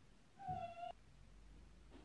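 A brief high-pitched cry, about half a second long, sliding slightly down in pitch and cut off by a short click.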